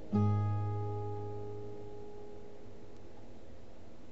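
Acoustic guitar ending the song: a last low chord struck just after the start rings out and fades away over two to three seconds.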